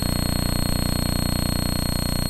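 A steady electrical buzz with a fast, even flutter and a faint high whine, unchanging throughout.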